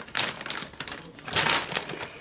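Plastic zip-top bag of broccoli florets crinkling as it is handled, in irregular crackles with a brief lull about a second in.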